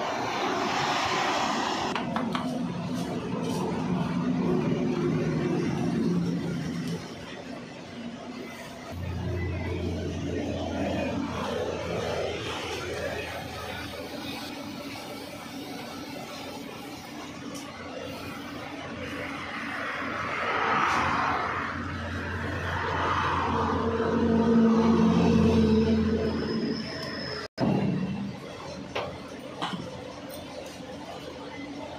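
Tea sizzling and bubbling up as it boils in a red-hot clay pot for tandoori tea, amid tea-stall noise. A low hum starts and stops twice.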